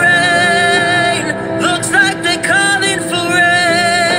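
A man singing a slow ballad over a backing track, holding long notes and sliding between them without clear words.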